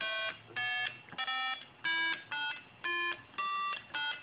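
Homemade microcontroller music synthesizer playing electronic tones through a small speaker as its keypad keys are pressed: about seven short notes, one after another, each at a different pitch with brief gaps between them.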